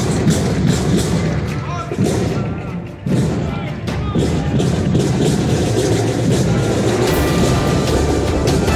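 Marching band music with drum beats, with people's voices over it; sustained instrument tones come in near the end.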